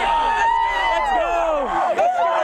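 A team of high-school football players shouting and cheering together in a victory celebration: many voices overlapping in long yells that mostly fall in pitch.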